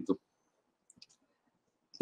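A man's voice trails off at the end of a word, then a pause of near silence broken by two faint, short clicks.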